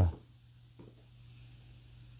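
A man's spoken word trails off at the start, then a pause of faint room tone: a steady low hum with one small tick about a second in.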